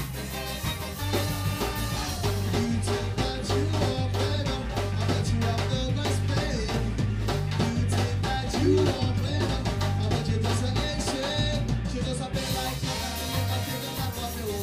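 A ska band playing live: a steady drum beat and bass line with guitar and a voice over them.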